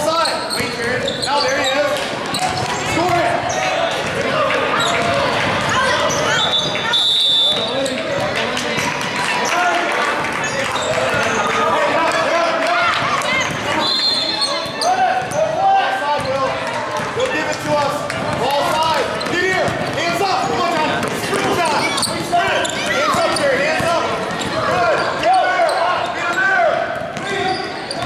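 Indistinct voices of spectators and players echoing through a gym, with a basketball bouncing on the hardwood court during play. Two short high steady tones sound about a quarter and halfway through.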